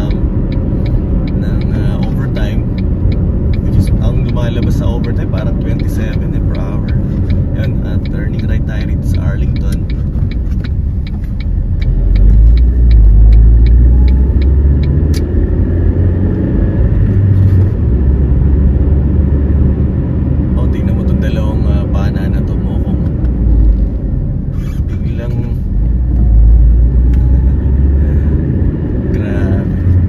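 A car driving, heard from inside the cabin: a steady low rumble of road and engine noise that swells several times along the way.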